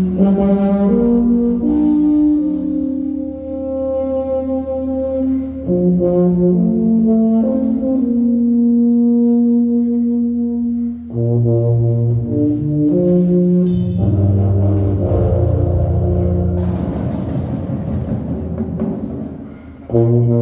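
Indoor drumline show music: slow, sustained brass-like chords that change every second or two, with deeper low notes joining about halfway through. A swelling crescendo builds over the last few seconds.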